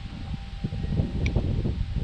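Wind buffeting the microphone outdoors, an uneven low rumble, with one small click about a second in.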